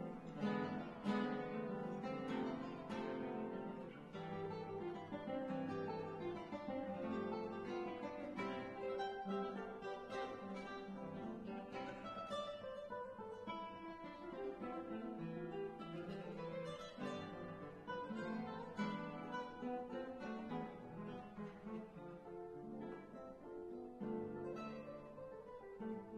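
Nylon-string classical guitar played fingerstyle: a continuous stream of plucked notes and chords at a steady level.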